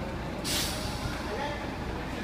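A short, sharp hiss of compressed air from a bus's air brake about half a second in, fading quickly, over the low steady rumble of a vehicle.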